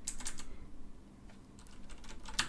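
Typing on a computer keyboard: a few quick keystrokes at the start, a short pause, then more keystrokes near the end.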